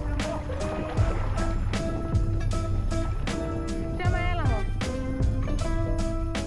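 Background music with a steady drum beat and held notes; a sliding, falling run of notes comes about four seconds in.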